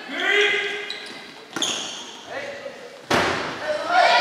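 Kin-ball players shouting in a reverberant sports hall, with a sharp smack about a second and a half in and a louder hit on the giant ball just after three seconds.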